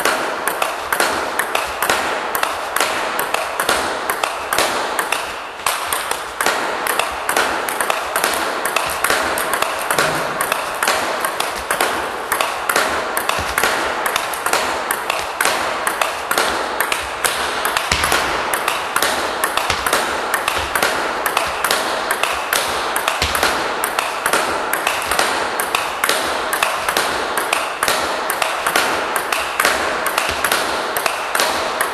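Table tennis ball in a continuous fast topspin rally against a rebound board: a quick, steady run of sharp clicks as the ball hits the bat, the table and the board.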